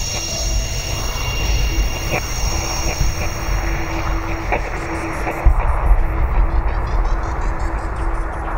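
Dark ambient dungeon-crawl soundtrack: a deep low drone under a steady hum that comes and goes, with scattered knocks. A sharper, louder hit comes about five and a half seconds in.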